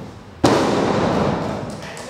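A wrestler landing on the canvas of a wrestling ring after a flip: one loud boom about half a second in, followed by a rumble through the ring that fades over about a second.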